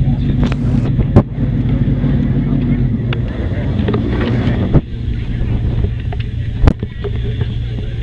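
A car engine idling steadily with a low hum. A few sharp knocks fall at about one, five and seven seconds in.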